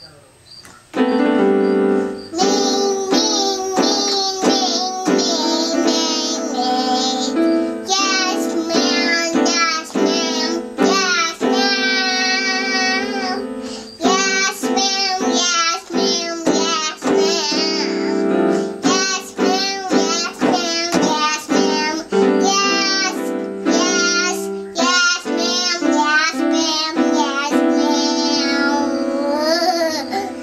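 A toddler singing in long, wavering held notes over steady sustained notes from an electronic keyboard, starting about a second in.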